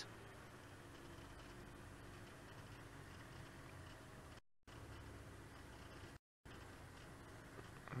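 Faint, steady low engine hum of an open safari vehicle driving slowly on a dirt track. The sound cuts out completely twice for a fraction of a second, dropouts in the live broadcast signal.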